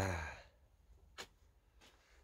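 A man's drawn-out, falling exclamation of admiration ("iya!") trailing off, followed by quiet room tone with a couple of faint clicks.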